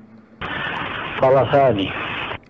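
Speech only: a man's voice in an old, narrow-band recording with a steady hiss that comes in about half a second in.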